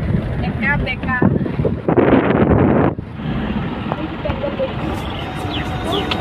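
A car driving on a rough dirt road, heard from inside the cabin as a continuous low rumble. About two seconds in, a loud rush of noise lasts about a second and cuts off sharply.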